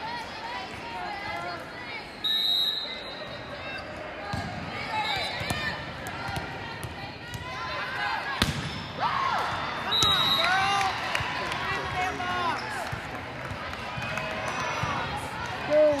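Indoor volleyball rally in a large, echoing hall: players and spectators calling and shouting, with ball hits and bounces. A short high whistle blast sounds about two seconds in, another comes briefly near ten seconds in, and there is a sharp ball hit about eight seconds in.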